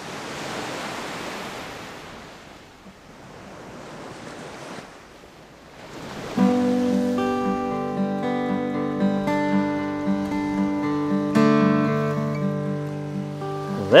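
Ocean surf washing in and ebbing, twice, then acoustic guitar music begins about six seconds in.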